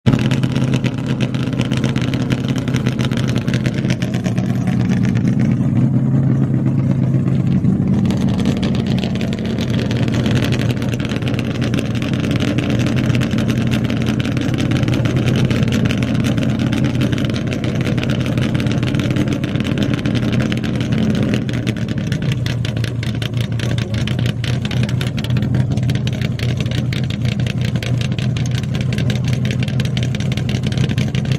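1964 Ford Falcon race car's engine idling steadily, with a slight rise in revs around six seconds in.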